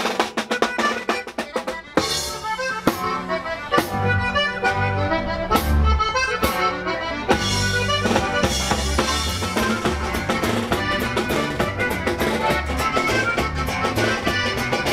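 Norteño band music led by accordion over a drum kit keeping a steady beat.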